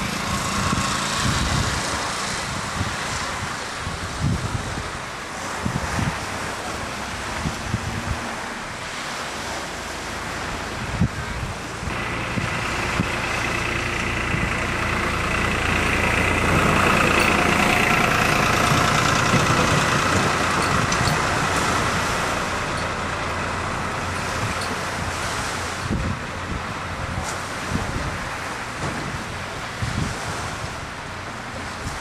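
Steady wind and small waves washing on a sand shore, with an engine passing that rises from about twelve seconds in, is loudest around the middle and then fades.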